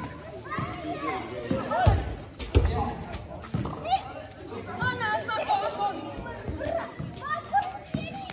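Children shouting and calling to each other while playing football, several voices overlapping, with a couple of loud thumps about two seconds in.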